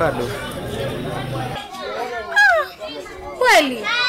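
A man talking, then children's high-pitched voices calling out in the background, two quick cries falling in pitch.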